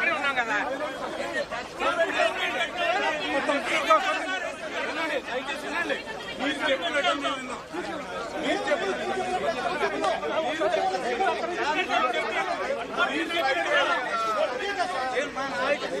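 A crowd of people talking over one another: a continuous babble of many overlapping voices with no single speaker standing out.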